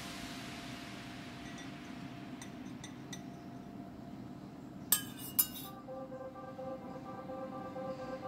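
Two sharp metallic clinks about half a second apart, some five seconds in, from a stainless steel pouring pot and its long steel spoon being set down after pouring wax, each with a short ring. A few faint ticks come before them.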